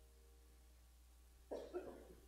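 Near silence, then about one and a half seconds in a person coughs, two quick coughs close together.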